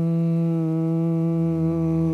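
A voice humming a long, steady 'mmm' on one pitch, held as a voice exercise to feel the tone's vibration after a deep belly breath.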